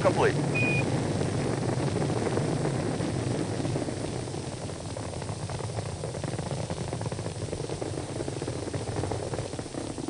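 Space Shuttle launch rumble in archival film sound: a steady deep roar that slowly fades during the first half as the vehicle climbs away.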